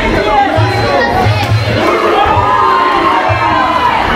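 Fight crowd shouting and cheering for the boxers, many voices at once, with one long held call standing out over the rest from about halfway through.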